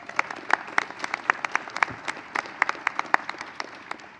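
A small crowd applauding, with individual hand claps standing out sharply over the steady patter of clapping.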